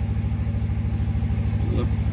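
An engine running steadily at idle, a low hum with a fast, even pulse.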